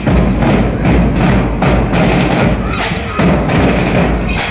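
Marching band percussion: bass drums and side drums beaten in a steady marching rhythm, with hand cymbals.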